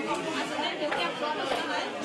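Many people talking at once in a crowded hospital ward, a steady babble of overlapping voices that starts suddenly.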